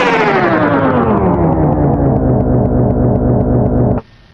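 Electronic dance track winding down in a tape-stop-like effect: the whole mix slides steadily lower in pitch and duller over about two and a half seconds. It then holds on a low drone until it cuts off suddenly at the end.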